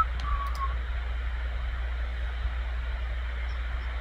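Steady low hum with faint background hiss on a video-call audio line, with a faint brief vocal sound in the first second.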